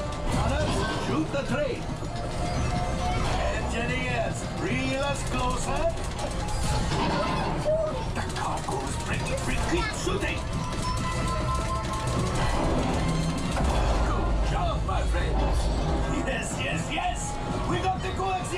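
Simulator-ride soundtrack in the Millennium Falcon cockpit: music over a low rumble of ship effects, with voices cutting in. The rumble grows deeper and louder about 13 seconds in.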